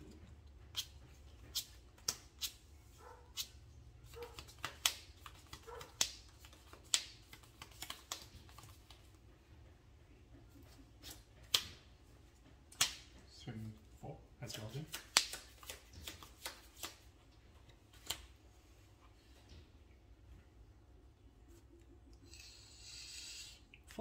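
Trading cards being handled and played onto a cloth playmat: a scattering of sharp card taps and clicks at irregular intervals, with a brief burst of card rustling or shuffling near the end.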